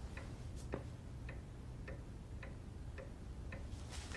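A clock ticking faintly and evenly, a little under two ticks a second, over a low steady hum.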